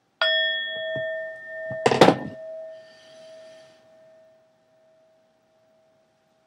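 A struck bell-like metal tone rings out and decays slowly, its lowest note lingering longest. A brief loud clatter comes about two seconds in.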